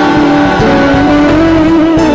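Loud live gospel band music, an instrumental passage with no singing, and a long held note that bends up slightly near the end.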